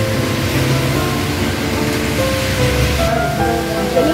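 Background music with long held notes over a steady hiss.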